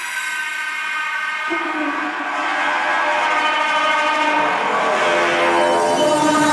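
Drum and bass track in a breakdown: sustained, horn-like synth chords with no drums or bass, a lower note entering about a second and a half in, swelling steadily louder as it builds toward the drop.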